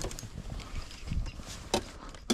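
Handling noise of fishing rods and gear being moved on a small boat: low bumps and knocks with a faint hiss, and one sharp knock near the end.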